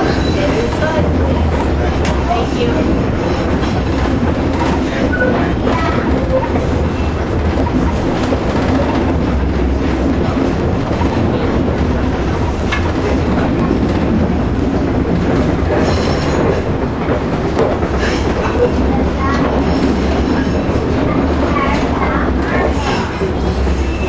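Inside a streetcar bought from Toronto as it runs along the track: a steady, loud rumble of the wheels on the rails and the car's running gear, heard from within the cabin.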